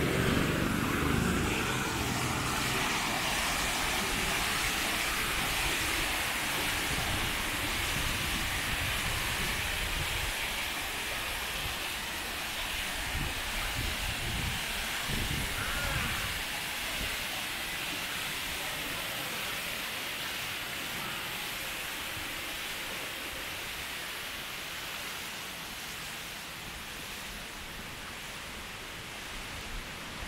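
Ornamental fountain running: a steady rush of water from the fountain jets and the water cascading down tiered stone steps. A low rumble in the first couple of seconds fades away.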